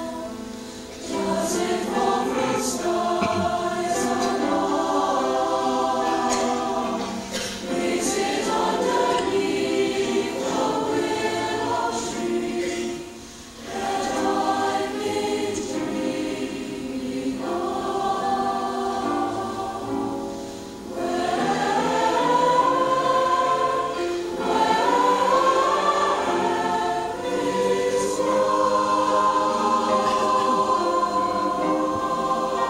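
Large mixed choir singing in sustained phrases, broken by brief pauses about a second in, about halfway and about two thirds of the way through.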